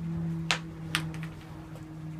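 Paint tubes and jars handled on a work table: two sharp clicks about half a second apart, with a few fainter ticks, over a steady low hum.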